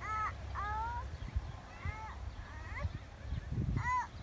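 A crow cawing repeatedly, a run of short, evenly shaped caws about every second, over low wind rumble on the microphone.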